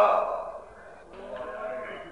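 A man's voice chanting a mournful Arabic elegy into a microphone. The end of a held sung phrase fades out in the first half second, and about a second in a softer, wavering sung tone carries on quietly.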